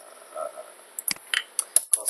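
Computer keyboard keys clicking: a quick run of about half a dozen sharp key presses, starting about a second in.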